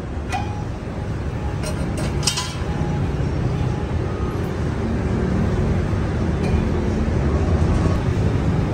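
A few light metallic clinks about two seconds in as the steel blade shaft and fittings of the tiller are handled, over a steady low rumble of a vehicle engine that grows louder toward the end.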